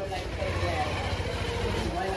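Street background noise: a steady low rumble with faint voices in the distance.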